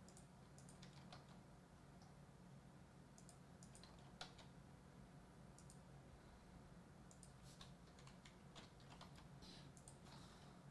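Faint computer keyboard keystrokes and clicks, scattered and irregular, with one louder click about four seconds in, over a low steady hum.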